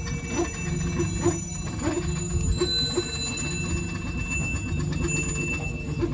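A Balinese priest's hand bell (genta) ringing continuously during worship, its thin tones held steady, over a low steady drone.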